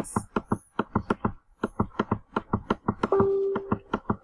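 Rapid computer mouse clicks, about six a second, from a button being clicked over and over to scroll a list up one line at a time, with a brief pause partway through. A short steady hum sounds about three seconds in.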